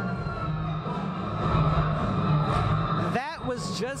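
Muffled, bass-heavy rumble of the rock concert in the theatre, with a murmur of people, as a steady low din. A man's voice starts about three seconds in.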